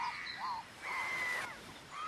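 Tropical jungle ambience with bird calls: a few short, arching calls, then one longer level whistled call about a second in.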